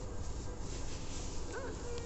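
A short high whimpering call that rises and falls near the end, then a brief held whine, over faint background noise.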